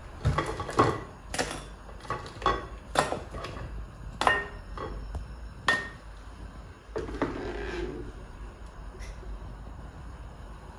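Bowl and plates knocking and clinking on a kitchen counter as pieces of dried fish are gathered into a bowl: about eight separate strikes, two of them ringing briefly like crockery.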